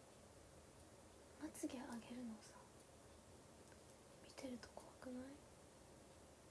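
A woman's soft voice in two short, quiet vocal phrases, one about one and a half seconds in and another about four and a half seconds in, over near-silent room tone.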